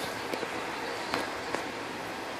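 Steady background hiss with a few faint, scattered clicks of wooden toy trains and track being handled.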